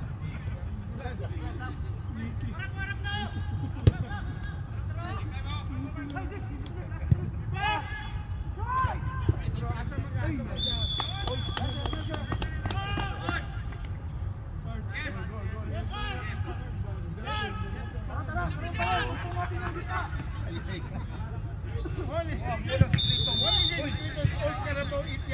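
Football being played on a turf pitch: players shouting to one another across the field, with a few sharp thuds of the ball being kicked. A high, steady whistle blast lasts about a second and a half near the middle, and a shorter one sounds near the end.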